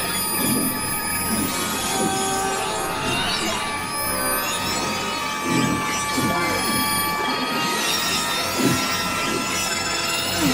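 Experimental electronic piece built from beluga whale sounds: many layered held tones, with short gliding squeals and whistles that come and go.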